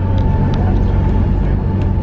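Passenger ferry's engines running steadily, heard from inside the cabin as a loud, even low drone with a faint steady hum above it and a few light clicks.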